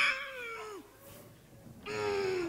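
A person wailing in long, high cries that slide down in pitch as each one ends: a loud one at the start, a fainter one in the middle, and another beginning near the end.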